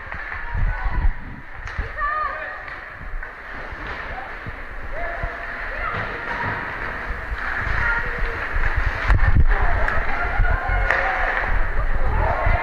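Ice hockey game sounds in a rink: skates scraping the ice and sticks working the puck, with low thuds of play and scattered chatter from spectators in the stands. A sharp knock about nine seconds in, and the noise builds toward the end.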